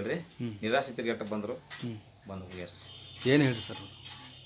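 A man speaking in an interview, with a thin, high, rapidly pulsing chirp running steadily behind his voice.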